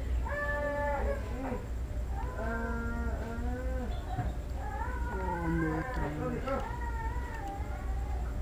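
A string of drawn-out, pitched vocal calls, each rising and falling over about half a second to a second, over a steady low hum.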